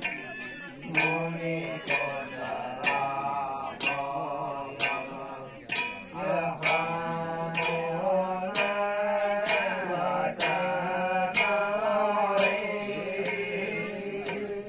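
A man's voice chanting a Kumaoni jagar, the traditional sung invocation, into a microphone, with sharp percussion strikes keeping a steady beat of about one a second.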